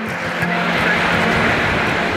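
Wind buffeting a handheld camera's microphone outdoors: a steady rushing noise with an uneven low rumble.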